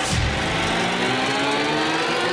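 Film-projector sound effect: a motor whine rising steadily in pitch as it spins up, over a low rumble.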